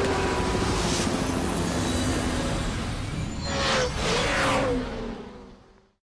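Race-car engine sound effects under an animated logo: a pitched engine note sliding slowly down, then two quick fly-bys with a whoosh about a second apart. The sound fades out near the end.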